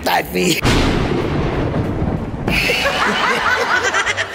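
A comic explosion sound effect edited into a variety show: a noisy blast that sounds for about two seconds, followed by a burst of laughter.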